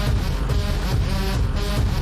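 Loud UK hardcore dance music from a DJ set: a heavy, steady beat with a repeating synth figure about twice a second.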